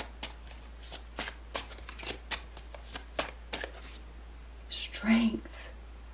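A tarot deck being shuffled by hand: a quick run of crisp card clicks, about four a second, that stops about three and a half seconds in. About five seconds in comes a brief vocal sound from a woman's voice.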